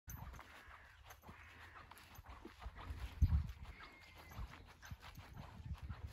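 Horses walking up across grass, their hooves making faint, soft thuds, over a low rumble, with one louder thump about three seconds in.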